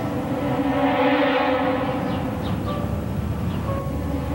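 Dramatic background music from the soap opera's score: sustained held notes with a swelling wash of sound about a second in.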